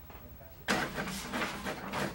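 Printer starting abruptly and running as it feeds out another copy of a print job sent more than once.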